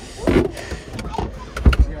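Clunks and clicks from a Toyota Sienna's fold-away seat mechanism being worked by hand: a thud about a third of a second in, a few sharp clicks around a second in, and two heavy low thumps near the end.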